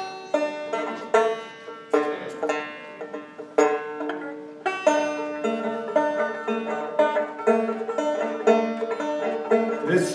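Banjo played solo: a run of plucked notes, each with a sharp attack and left ringing, settling into a quicker, even picked pattern from about halfway through.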